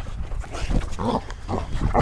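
Dogs playing close to the microphone, making a few short, separate noises over a low rumble.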